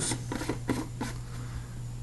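White plastic screw lid being fitted onto a clear plastic jar: a handful of short clicks and scrapes in the first second or so, over a steady low hum.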